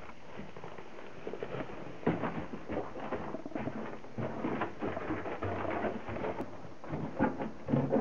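Footsteps scuffing over debris and a concrete floor, with handling knocks from a moving handheld camera. They are irregular and get busier about two seconds in, with the loudest knocks near the end.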